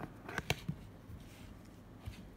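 A few light, sharp taps about half a second in from a hand handling the tablet as its camera app opens, then low room tone.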